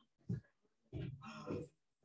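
A person's voice making short murmured sounds rather than clear words: a brief one just after the start and a longer one from about a second in.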